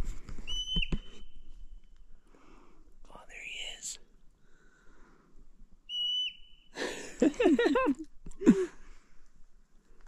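A marmot gives its alarm whistle twice: long, level, high-pitched whistles, each ending in a quick drop in pitch, the first lasting over a second and the second shorter, about six seconds in.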